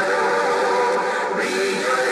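A church choir singing, holding a long chord in several voice parts.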